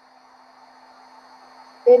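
Heat embossing gun blowing hot air onto card stock to melt white embossing powder: a faint, steady, even hiss.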